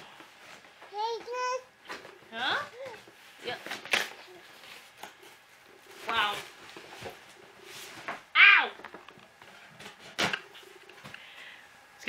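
A small child babbling in short bursts, loudest about eight seconds in, over the rustle and tearing of a cardboard box being cut open with scissors, with a couple of sharp clicks.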